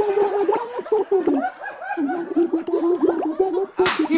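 A woman singing with her face submerged in a water-filled tank, her voice coming out as a bubbling, gargled warble that wavers and breaks off. There is a short, sharp noise near the end.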